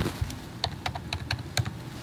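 Computer keyboard being typed on: a quick, irregular run of about ten light key clicks, as a new stock code is keyed in to call up a chart.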